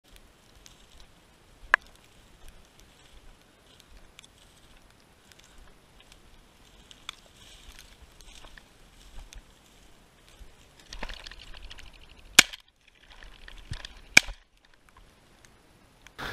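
Brushing and crackling of frosted tall grass as a person walks through it, with scattered small ticks and three sharp knocks: one about two seconds in, and two close together a little after twelve and fourteen seconds.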